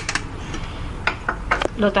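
A few light, sharp metal clicks and taps from a stainless steel flour sifter being handled: a cup tapping its rim as baking powder goes in, then its handle being worked to start sifting.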